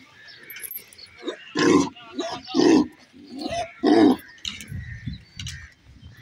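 Cattle calling: three short, loud, rough calls about a second apart, among fainter scattered sounds.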